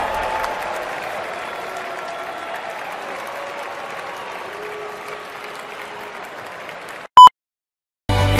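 Arena audience applauding and cheering, slowly fading. About seven seconds in it cuts off suddenly to silence, broken by one short, loud beep tone.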